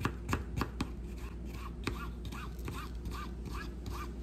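Kitchen knife slicing a red onion on a plastic cutting board: irregular sharp taps of the blade meeting the board, several close together at the start and again around the middle and end. Faint short chirps repeat about four times a second through the second half.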